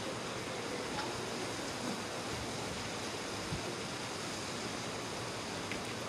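A steady rushing background noise with a few faint clicks.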